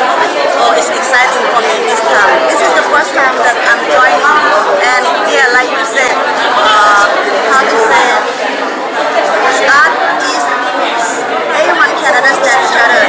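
Speech: a woman talking close up, over the chatter of a crowd in a large hall.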